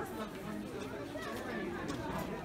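Indistinct chatter of many people talking at once in a crowded street, with no single voice standing out.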